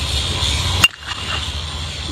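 A two-piece hybrid BBCOR baseball bat hitting a pitched ball once, a sharp hit with a brief ringing tone. The contact is slightly off the hands end of the barrel.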